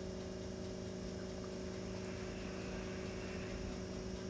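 A steady low hum with a faint even hiss behind it, unchanging throughout: background room noise with a constant electrical or appliance hum.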